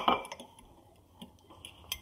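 Kitchen utensil and glassware handling: a sharp clink at the very start, then a few light scattered clicks and taps as a fork and a glass measuring cup of milk and egg are moved about.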